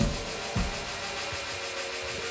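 A sparse break in a live band's instrumental: two low thumps about half a second apart, then a steady noisy wash with faint held tones.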